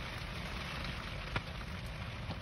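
Rain falling on a car's windshield, heard from inside the car: a steady hiss of drops with one sharper tick about one and a half seconds in.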